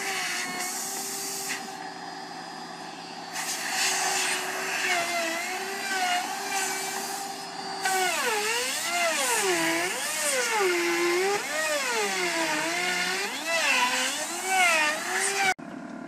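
A DeWalt compact router runs steadily while cutting a profile into an MDF panel along a jig. From about eight seconds in, its motor pitch repeatedly dips and rises as it is pushed through the cut. It cuts off suddenly just before the end.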